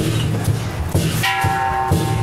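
Lion dance percussion: a drum beating a steady rhythm with cymbal clashes. A little past halfway a ringing tone is held for about two-thirds of a second.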